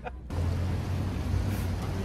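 A laugh breaks off at a cut, then steady city street traffic noise: a low rumble with a wide hiss over it.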